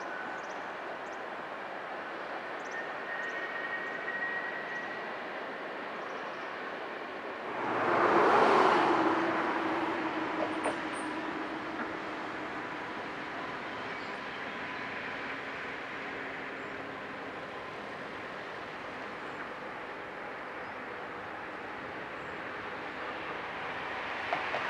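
Trains crossing a railway bridge, heard from a distance: a steady rumble of running trains, first a passenger train, then a locomotive-hauled freight train. A brief, louder rush of noise comes about eight seconds in.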